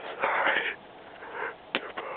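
A person's loud breathy exhale or gasp close to the microphone, followed by a single sharp click near the end as a hand handles the camera.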